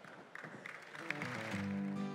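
Closing music fading in about a second in, led by a strummed acoustic guitar.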